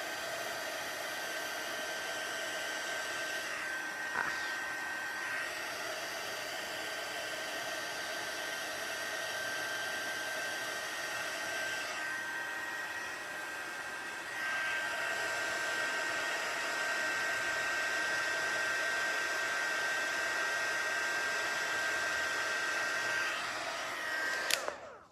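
Handheld embossing heat gun blowing steadily, its fan giving a high whine over the airflow, as it heats the back of a piece of cardstock to flatten it. It gets a little louder a bit past halfway.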